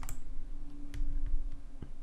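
A few isolated clicks of computer keys and mouse buttons as Blender shortcuts are keyed in, over a faint steady hum.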